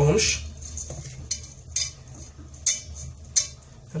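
Hands working shredded kataifi pastry strands with melted butter in a metal bowl: a handful of short, scratchy rustles of the dry strands brushing against each other and the bowl.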